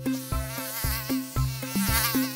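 Cartoon mosquito buzzing sound effect, a high wavering whine that starts abruptly, over background music with a steady beat.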